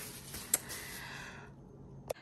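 Soft plastic rustling as a roll of thin plastic bin bags is handled and set down, with a single click about half a second in; the rustling fades out after about a second and a half.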